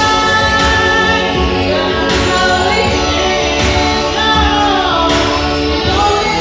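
A woman singing into a microphone over an instrumental backing track, holding notes and gliding between them, with an accent in the backing about every second and a half.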